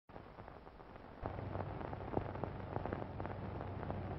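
Crackle and hiss of an old 1930s optical film soundtrack before the music starts, with a steady low hum coming in and the noise growing louder about a second in.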